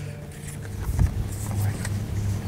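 Outdoor ambience: a low, steady rumble with a brief click about a second in.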